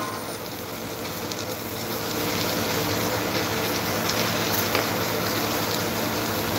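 Submerged arc welding tractor running along a steel plate seam: a steady hum with a hiss over it, a little louder from about two seconds in.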